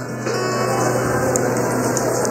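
Acoustic guitar being strummed on its own, with no voice.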